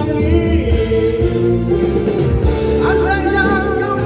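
A man sings a Malay-language pop ballad into a microphone over a recorded backing track played through a PA system. Near the end he holds a long note with vibrato.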